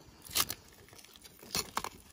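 Duct tape being pulled off the roll and wrapped around a plastic two-liter bottle: a short crackling rip about half a second in, then several quicker rips near the end.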